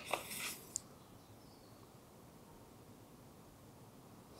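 A brief rustle of the album's pages being handled, ending in a light click just before one second in; then faint room tone.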